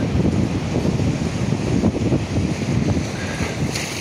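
Wind buffeting the microphone in a low, uneven rumble, with the wash of the sea behind it.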